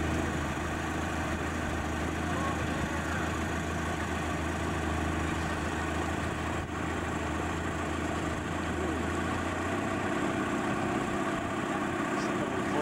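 Motorboat engine running slowly at low throttle while towing a tube, a steady low drone whose deepest part drops away about ten seconds in.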